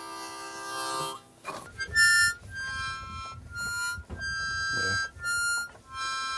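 Harmonica music: a held chord for about a second, then a tune of separate held notes.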